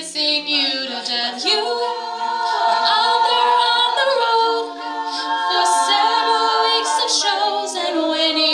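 All-female a cappella group singing in multi-part harmony, several voices holding chords together with no instruments, the chords changing every second or two.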